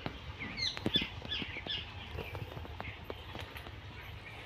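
A small bird chirping: a quick run of short, bending chirps in the first two seconds, then scattered fainter calls, over steady outdoor background noise with a few light knocks.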